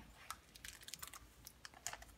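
Faint handling of a picture book as its cover is opened and the first page turned: a scatter of small clicks and ticks from the cover and pages, with a slightly louder one just before the end.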